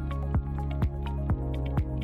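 Electronic background music with a steady kick-drum beat, about two beats a second, over a held bass line and short plucked synth notes.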